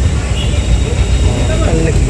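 A steady low rumble, with a voice speaking faintly in the second half.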